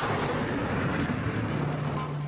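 Steady rushing roar of a jet aircraft launching from an aircraft carrier's deck catapult, with a faint low hum underneath.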